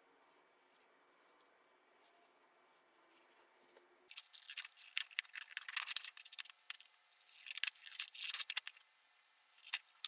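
Scissors cutting through a sheet of paper, starting about four seconds in after a quiet stretch, in three runs of quick crisp cuts with short pauses between.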